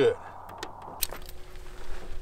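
Light handling clicks and small metallic rattles from a rear backup camera on its bracket and a screwdriver being picked up, with one sharp click about a second in.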